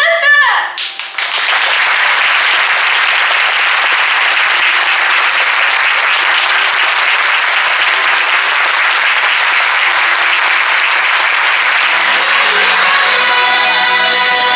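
Audience applause, loud and steady for about eleven seconds after the last words of a speech. Near the end, a pop song's backing music comes in under it.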